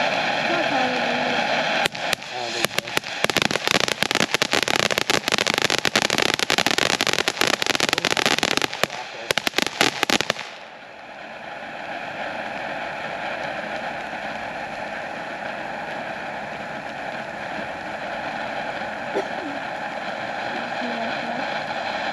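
Miracle animal-themed firework fountain spraying with a steady hiss. From about two seconds in, it breaks into dense crackling for about eight seconds, then settles back to a steadier, quieter hiss.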